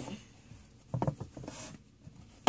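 A small fabric doll blanket being pulled up over a doll in a toy bed: a cluster of light taps against the toy bed about a second in, then a soft rustle of the cloth.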